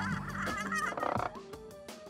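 A short, fast-warbling novelty sound effect over background music, ending about a second and a half in, after which the music with its steady beat carries on.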